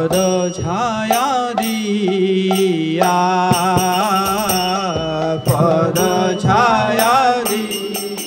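A man singing a slow Bengali devotional kirtan, his voice gliding and ornamenting each held note. A mridanga drum played by hand keeps time beneath, with regular ringing strikes of hand cymbals and a steady low drone.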